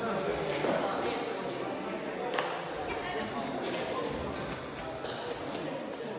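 Indistinct voices of players and onlookers echoing in a large sports hall, with a few sharp taps.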